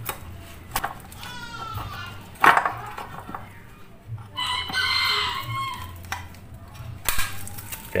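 A rooster crowing: one long call from about four and a half to six seconds in, with a shorter call before it. Sharp clicks and knocks of hand tools against the metal case break in, the loudest about two and a half seconds in.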